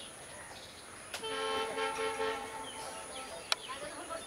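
A horn sounds once, starting about a second in and holding steady for just over a second, followed a little later by a single sharp click.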